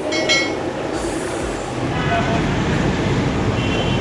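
Hot oil sizzling in a large karahi as potato samosas deep-fry, over a street-traffic rumble that grows louder about halfway through. A short chime sounds near the start.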